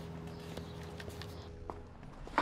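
Faint footsteps tapping on pavement, a few scattered steps, over a steady low hum of background ambience.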